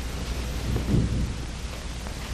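Steady hiss and low hum of an old film soundtrack, with a brief low rumble about a second in.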